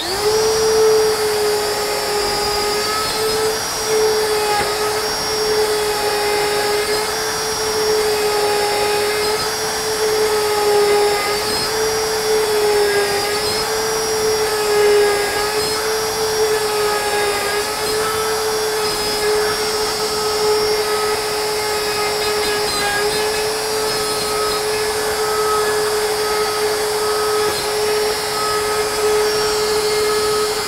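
Compact plunge router with a straight bit running and plunge-cutting a mortise in wood, guided by a bushing in a jig. It gives a steady high whine that dips slightly in pitch now and then as the bit takes its cuts.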